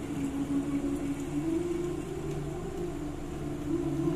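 Live ghazal concert music heard from the audience: a quiet passage of long held melodic notes that step in pitch every second or so.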